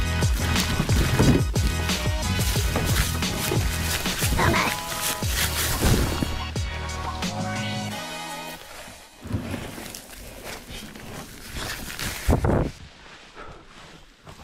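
Background music with a steady bass beat and a sung melody for about the first eight seconds, then it stops. After that come irregular footsteps and scraping on a dry dirt bank covered in dead leaves, with a plastic Hobie Outback kayak hull being dragged over the ground.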